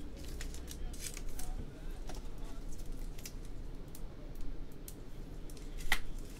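Trading cards and foil pack wrappers being handled on a table: a run of short, sharp snaps and rustles, with a louder one near the end.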